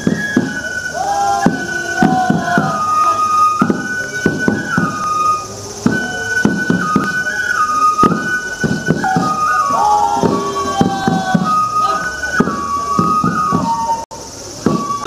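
Festival music for a three-lion shishimai dance: a flute plays a melody that moves in held steps, over frequent irregular drum strikes from the lion dancers' waist drums.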